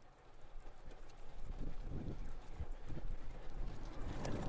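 A car approaching along the street, its engine and tyre noise growing steadily louder, with wind buffeting the microphone in irregular low thumps.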